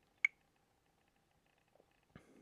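A single short click about a quarter of a second in, as a Back button is tapped on a Samsung Wave S8500 touchscreen.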